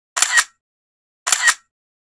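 Camera shutter sound effect, clicking twice about a second apart, each click a short double snap.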